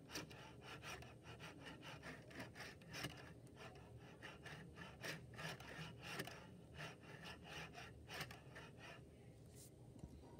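Faint rolling and clicking of an HO-scale model caboose's wheels on a short length of track as it is pushed back and forth by hand, with quick irregular clicks and scrapes that die away in the last second.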